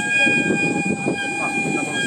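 Traditional Japanese folk-dance accompaniment: flute holding long steady high notes, with voices underneath.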